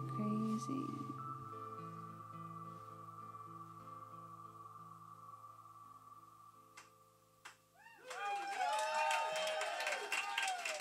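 A live band's final sustained chord rings out and slowly fades over about seven seconds. About eight seconds in, the audience breaks into cheering and clapping.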